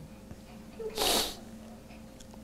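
A single short sneeze: one hissy burst lasting under half a second, about a second in, over a faint steady room hum.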